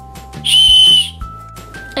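A tiny pink plastic whistle charm blown once: a short, shrill, steady blast of about half a second, starting about half a second in, showing that the toy whistle works.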